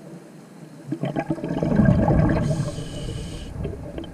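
Underwater exhalation bubbles from a diver's scuba regulator, a rough bubbling rumble starting about a second in and loudest near the middle, followed by a hiss of about a second as the diver breathes in through the regulator.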